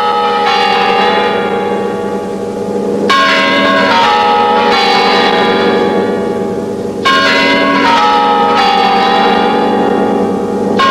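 Bells ringing in runs of notes that step down in pitch, with a fresh run striking in about three seconds in and again about seven seconds in.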